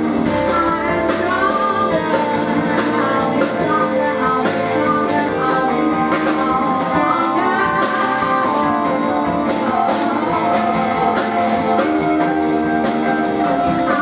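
Live jazz-funk quintet playing a song: a woman singing over hollow-body electric guitar, Rhodes electric piano, electric bass and drum kit with cymbals.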